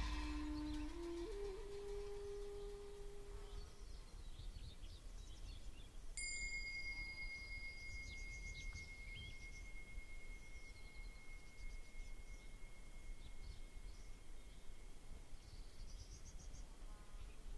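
Faint outdoor ambience: scattered small bird chirps over a low steady rumble, after a last held note of music that steps up in pitch and fades in the first few seconds. About six seconds in, a single high ringing tone starts and holds steady for about ten seconds.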